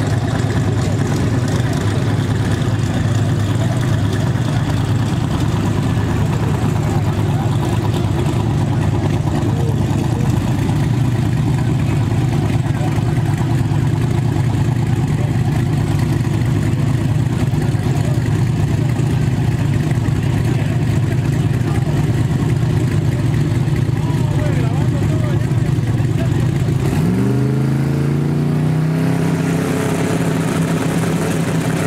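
Drag race cars' engines idling in a loud, steady drone. About three seconds before the end, one engine revs up and its pitch rises.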